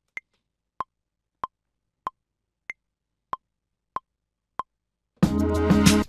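Maschine metronome count-in: eight even clicks, about one and a half a second, with a higher-pitched click opening each group of four. About five seconds in, the recorded pattern's sampled sounds start playing over the beat.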